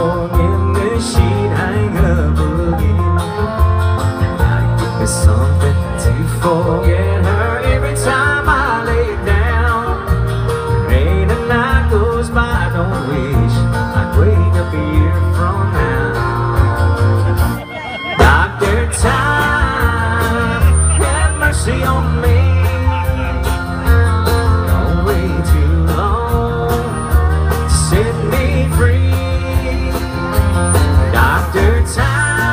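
Live country band playing, with a fiddle carrying gliding melody lines over strummed acoustic guitar, a steady bass line and drums. The music drops briefly a little past halfway, then picks up again.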